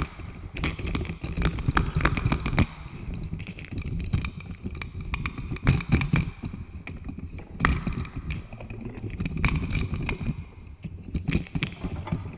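Contemporary chamber music played with extended techniques: dense, irregular clicks and taps over a rustling, noisy texture, with a faint high held tone.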